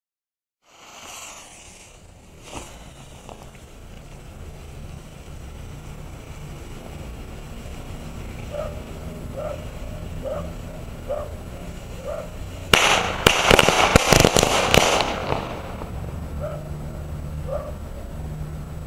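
Folded-paper frog (jumping jack) firecracker going off: about two-thirds of the way in, a rapid string of sharp cracks lasts roughly two seconds. Its folds are packed too tightly.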